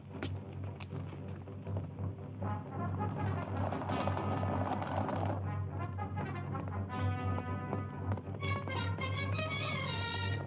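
Orchestral film score led by brass, trumpets and trombones, running under the action. A steady low hum sits beneath it, and the notes turn busier and higher about two-thirds of the way through.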